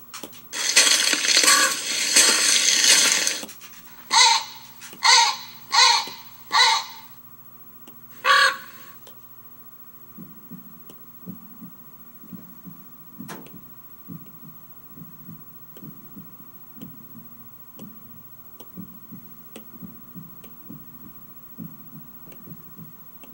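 Sound effects from a story app playing through the iPad: a loud rushing noise for about three seconds, then four short harsh calls in quick succession and one more a moment later. From about ten seconds in, a soft, irregular low pulsing runs under a faint steady tone.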